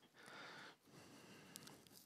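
Near silence: room tone with a faint soft rustle early on and a couple of small clicks near the end, from handling the box and the knife.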